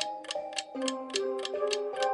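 Quiz countdown timer ticking like a clock, about three sharp ticks a second, over background music with held notes.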